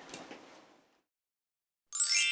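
Near silence: faint room sound dies away in the first half-second, then about a second of dead silence. Right at the end a bright, ringing chime cuts in with a quick upward sweep.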